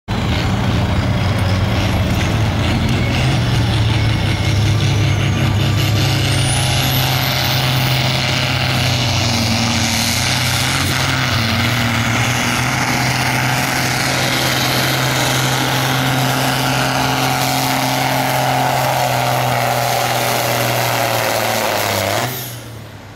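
John Deere farm tractor's diesel engine running at full load as it pulls a weight-transfer sled, a loud steady drone with a high whine rising about six to eight seconds in and a tone sinking slowly in pitch near the end.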